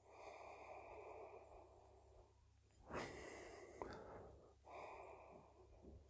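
A man sniffing a glass of beer held at his nose: three faint, drawn-out breaths through the nose, the middle one the loudest.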